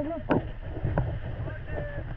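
Rushing whitewater of a river rapid around an inflatable raft, with wind noise on the camera microphone and a shouted call right at the start.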